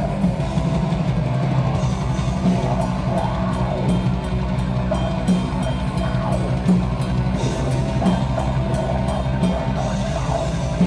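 Heavy metal band playing live: distorted electric guitars, bass guitar and drum kit with cymbals, loud and dense throughout.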